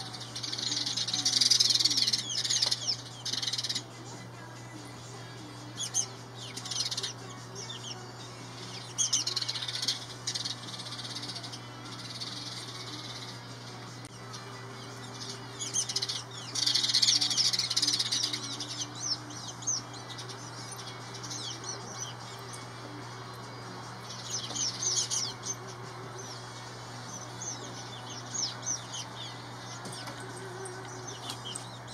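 House sparrows chirping in several bouts of quick, high chirps, each lasting one to three seconds, with quieter gaps between.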